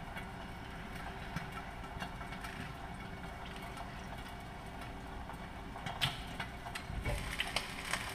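Ribeye steak frying quietly under a glass lid in a skillet, over a steady low hum, with a couple of light knocks near the end.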